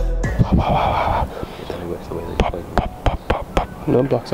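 Background music cutting off just after the start, then wind buffeting the microphone, with a run of sharp pops in the middle and faint voices.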